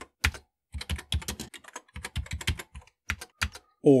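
Typing on a Commodore Plus/4's keyboard: a quick, uneven run of key clicks with a short pause about halfway, and a man's voice coming in at the very end.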